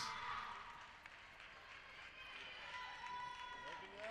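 Faint gymnasium background: quiet voices and footsteps on the hardwood court.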